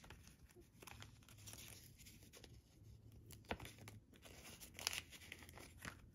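Faint rustling and crinkling of paper banknotes and paper cash envelopes being handled, with a few brief crisp snaps of paper.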